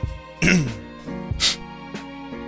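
Steady background music of held tones, with a man clearing his throat about half a second in and a short breathy noise near the middle.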